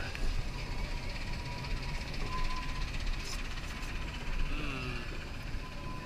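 Narrow-gauge zoo railway passenger car rolling along the track: a steady low rumble, with a thin steady tone that holds for a couple of seconds at a time.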